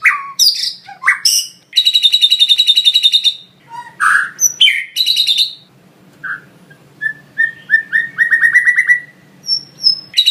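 White-rumped shama (murai batu) singing a varied song of whistles and chips, its song filled with mimicked lovebird calls. Its notes come in fast runs of repeated chips, with a short pause about six seconds in before a rising series of notes.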